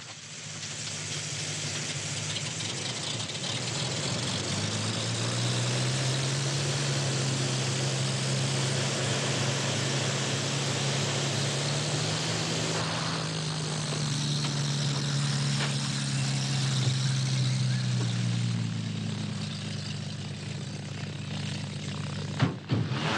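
An engine droning steadily under a broad hiss. Its pitch rises a little about five seconds in, holds, then eases down near the end.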